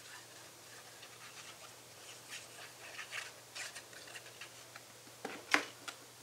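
Hands handling paper pieces and a plastic glue bottle over a scrapbook page: faint rustling and scratching with small clicks, and one sharper tap near the end.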